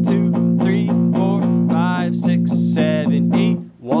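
Electric guitar strumming a B-flat power chord in steady eighth notes, part of a basic 12-bar blues progression. Near the end the strumming breaks off briefly and a new, higher chord comes in.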